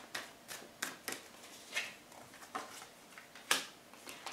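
Tarot cards being drawn from the deck and laid onto a wooden table: a string of short, soft card snaps and rustles. The sharpest snap comes about three and a half seconds in.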